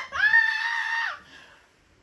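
A woman's voice letting out one long, high-pitched scream that swoops up at the start, holds steady for about a second, then breaks off.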